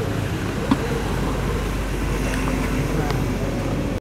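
Outdoor traffic ambience: a vehicle engine running low as an SUV moves off slowly, with indistinct voices of people in the background and a low rumble throughout.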